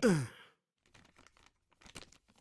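A man's short sigh, falling in pitch, in the first half-second, followed by faint rustling of paper sheets being handled.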